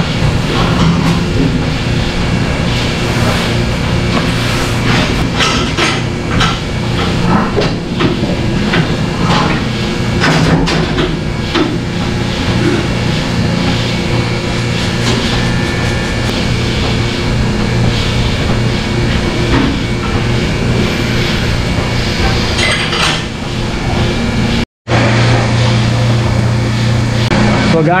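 Milking parlour at work: a steady machinery hum runs under frequent sharp clanks and knocks of metal stall gear and milking units being handled.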